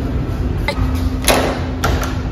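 A door with a metal lever handle being opened: a few sharp clicks from the latch and handle with a short louder knock between them, over a low steady hum.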